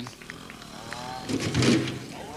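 Small trials motorcycle engine revving in a short burst about a second and a half in, with faint voices in the background.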